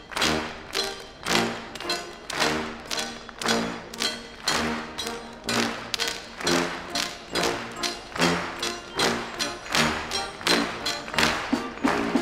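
Military brass band playing, with sharp percussive strikes landing evenly on the beat, about two or three a second, over held band chords.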